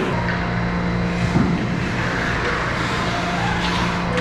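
Ice hockey skates scraping and gliding on rink ice as players skate, over a steady low hum. A single short knock comes about a second and a half in.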